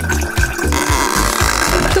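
Background music with a steady beat, and from about a second in a spray of liquid over it: cola gushing out of a hole in the bottle and splashing.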